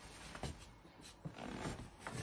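Faint shuffling and a few light knocks of leather shoes on a linoleum floor as a man steps out of them.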